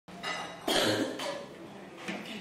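A person coughing in a room: three short rough bursts, the middle one loudest, then a low murmur.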